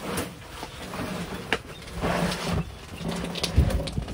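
A man grunting and breathing hard with effort while hauling a heavy trash bag, with rustling and a few sharp knocks. The loudest strain comes near the end.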